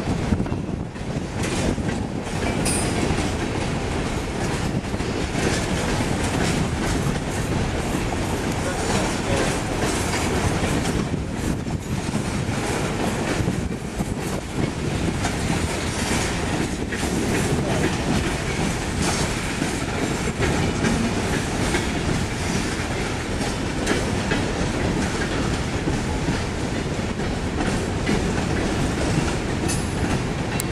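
Coal train's freight cars rolling past at low speed, a steady rumble with steel wheels clicking over the rail joints.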